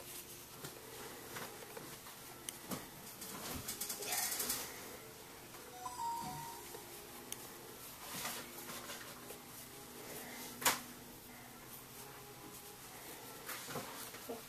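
Faint, scattered knocks and clicks over a low background, with one sharper knock about ten seconds in.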